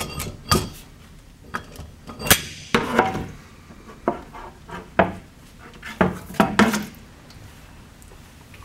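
Steel torque limiter parts, a pressure plate and hub, being handled and set down on a cardboard-covered table: irregular knocks and metal clinks, some ringing briefly.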